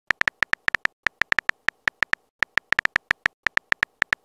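Synthetic phone-keyboard typing clicks from a texting-story app, one short tick per typed letter, about six a second in an uneven rhythm.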